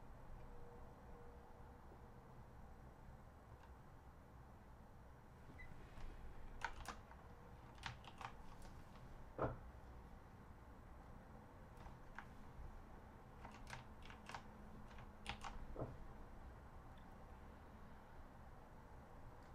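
Faint, scattered clicks of typing on a computer keyboard, single and in short runs, starting about six seconds in, over low room hiss.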